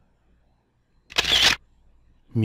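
A single short camera-shutter sound effect about a second in, one brief snap of noise used as a slide-animation sound, with near silence before it.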